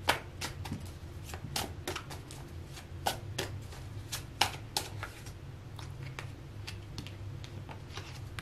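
A deck of cards being shuffled by hand to draw one more card: a quick run of soft flicking clicks, dense for about the first five seconds and thinning out toward the end.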